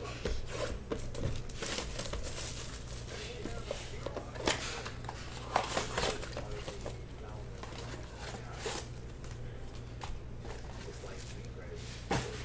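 Shrink-wrapped cardboard trading-card box being torn open by hand: plastic wrap crinkling and the box tearing, in irregular sharp crackles, over a steady low hum.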